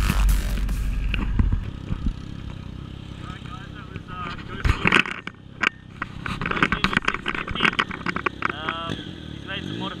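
A man talking over the low rumble of a motorcycle engine. The rumble is strongest for the first second or so, then drops away and carries on faintly under the voice.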